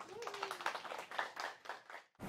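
Audience applauding, a run of many hands clapping that stops abruptly at the end.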